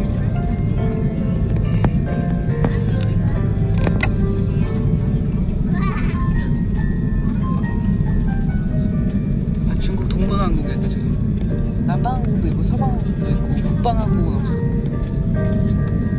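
Steady low rumble in an airliner cabin while a Korean Air A330 taxis, with music playing over it; the music's melody wavers in pitch about halfway through and again near the end.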